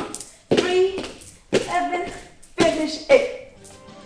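A woman's voice counting out dance steps in rhythm, about one call a second, over light taps of bare feet on a wooden floor.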